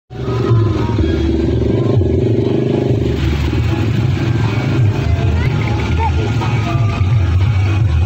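Loud music from the parade's sound system, with a motor vehicle engine running close by and crowd voices mixed in.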